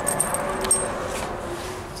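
Keys jangling lightly in the first second, with a few small metallic clicks, then faint room noise.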